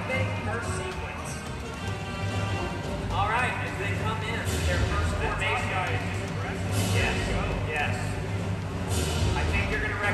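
Live concert music heard from the stands of an arena: singing over a steady bass accompaniment, with the voice coming in strongly about three seconds in.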